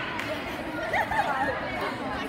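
Overlapping chatter of spectators in a large gym hall, with no single clear voice.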